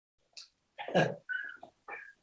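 A man's short breathy chuckle: a quick intake of breath, then a few irregular laughing bursts.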